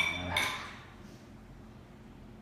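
Drinking glasses clinking together in a toast: two clinks about a third of a second apart, each with a brief high ring.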